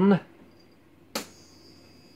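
A single sharp click of a switch about a second in, switching on a 70 W high-pressure sodium lamp (Osram Vialox NAV-TS), which strikes at once; a faint, steady high whine follows as the lamp runs.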